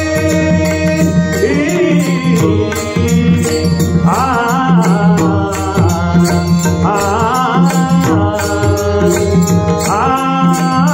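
Devotional Marathi abhang sung by a male voice in long gliding phrases over a steady harmonium, with pakhawaj drum strokes and an even, repeating percussion beat keeping time.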